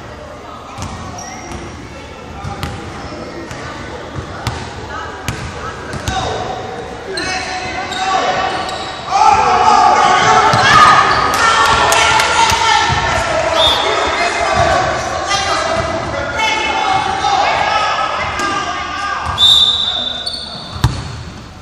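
A basketball dribbled on a hardwood gym floor, its bounces ringing in a large hall. From about nine seconds in, many spectators shout and cheer loudly over it.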